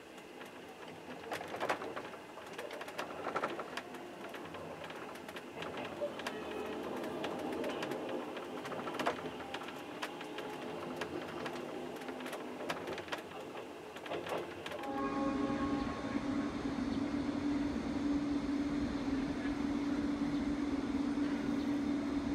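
Train riding noise heard from inside a carriage, with rattling and many sharp clicks from the running gear. About two-thirds of the way through it cuts to a steady, louder hum with one strong low tone, from an electric locomotive standing at the platform.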